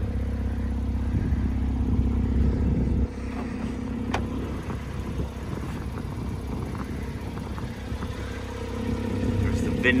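A steady low engine hum with a few held tones, quieter from about three seconds in, with a single sharp click about four seconds in.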